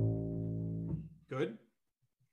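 The last plucked note of a jazz walking bass line on a double bass, played pizzicato, ringing and fading out over about a second. A short separate sound follows shortly after, then the bass falls silent.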